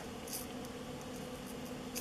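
Faint rustle of tiny white sequins being tipped from a small metal spoon into a plastic shaker, over a steady low hum.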